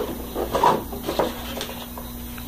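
Cardboard tablet box being handled as its lid is slid up and off, with light scrapes and taps of card on card. A short voiced hum from a person comes about a third of the way in.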